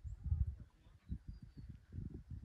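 Wind buffeting the microphone: uneven low rumbling gusts that start suddenly.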